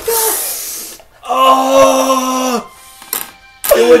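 A hissing rush that fades over the first second, then a voice holding one steady, unwavering note for about a second and a half, and a short click shortly before talk resumes.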